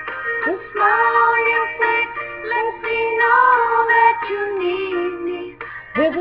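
A woman singing a slow country ballad without words being caught, holding long notes that glide from one pitch to the next, with a faint steady low hum beneath.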